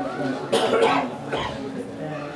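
A person coughing, two sudden coughs, the first about half a second in and a shorter one just past the middle, over low background chatter.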